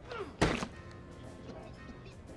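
A single heavy thump about half a second in, a blow landing, most likely a punch in a fight, over background music.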